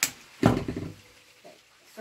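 Handling noise from artificial flower stems being worked into a wicker basket: a sharp click, then about half a second in a short, loud knock with rustling that dies away within half a second.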